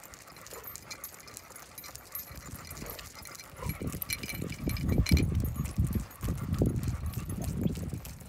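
Handling noise as the leashes are gathered in hand close to the phone: repeated muffled bumps and rubs against the microphone, with light clicks of the metal leash clips. It starts about halfway in and stays loud to the end.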